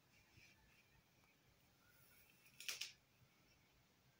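Near silence: faint room tone, broken about two and three-quarter seconds in by a brief rustle of the phone being handled against the window.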